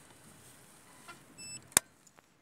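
Optical-fibre fusion splicer giving one short electronic beep about one and a half seconds in, followed a moment later by a single sharp click, the loudest sound, from handling the splicer.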